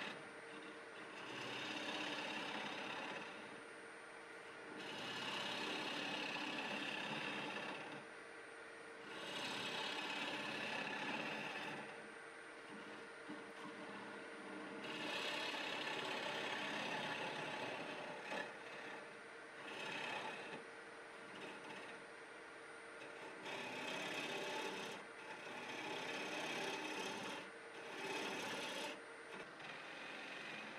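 Bowl gouge cutting into wood spinning on a lathe, hollowing the inside of a small bowl in about seven passes of two to three seconds each. The lathe's steady hum carries on between cuts.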